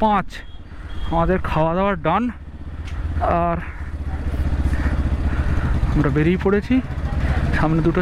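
A motorcycle engine running steadily at low road speed. Short bursts of a person's voice come and go over it.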